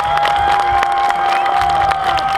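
Large concert crowd cheering and clapping, with one long high note held steadily over the noise.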